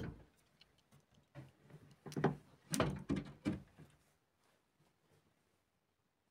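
A run of soft knocks and bumps with cloth rustling, from a handheld camera being moved among hanging clothes and curtains. The bumps cluster between about one and four seconds in.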